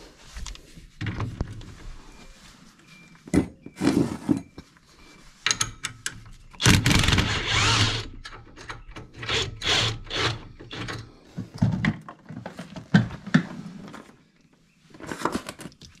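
Cordless impact wrench hammering loose the nut on a tie rod end at the steering knuckle, loudest in a burst of about a second and a half near the middle, with shorter runs and clanks of tools and parts around it.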